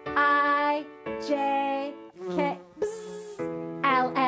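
Children's alphabet sing-along: a woman sings single letters over a steady music accompaniment, and about two seconds in there is a bee-like buzz, 'bzzz', lasting about a second, for a bee that has taken a letter's place in the song.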